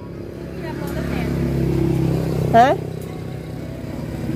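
A motorcycle engine passing by, growing louder for about two seconds and then fading away.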